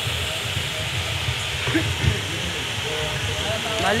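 Steady hiss and low rumble from the electric pedestal fans and the PA system, with faint voices in the background. A spoken word comes in at the very end.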